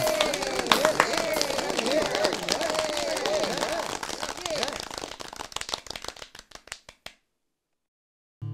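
Cartoon fireworks popping and crackling with voices cheering over them. The pops grow sparser and fade out, ending in silence about seven seconds in.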